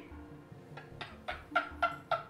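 A man's stifled, breathy laughter: short bursts about four a second, getting louder toward the end.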